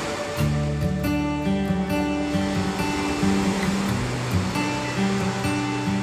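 Background music with guitar, coming in about half a second in, laid over the wash of small waves breaking on a beach.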